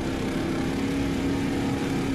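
Engine of an amphibious vehicle running at a steady speed while it travels over water: an even, unchanging drone.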